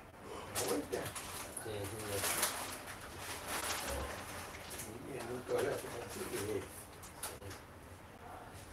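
A bird calling repeatedly, with faint voices in the background.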